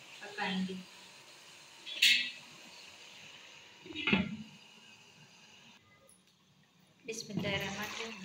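A glass pan lid clinking sharply against the rim of a metal kadai about two seconds in, then a duller knock about two seconds later as the lid is set down on the pan.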